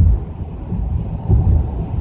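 Low rumble of a car heard from inside its cabin, swelling louder twice.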